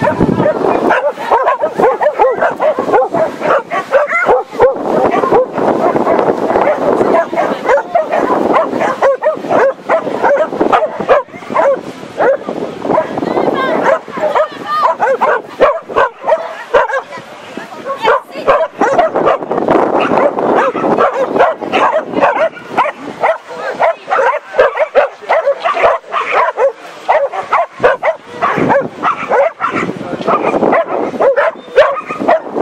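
A dog barking and yipping rapidly, almost without pause: the excited barking of a dog running an agility course.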